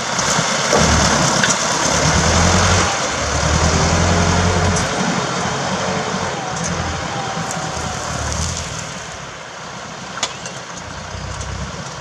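Farm tractor's diesel engine running under load as it pulls a tillage implement through the soil. It is loudest over the first few seconds, then fades as the tractor moves away.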